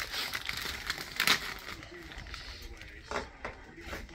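Plastic Doritos chip bag crinkling as it is handled and held up to the face to be sniffed, busiest in the first second or so with a sharp rustle just over a second in and another about three seconds in.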